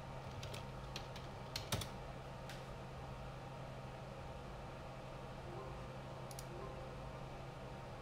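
A few scattered computer keyboard keystrokes and mouse clicks, most in the first two and a half seconds and one more a few seconds later, over a steady low hum.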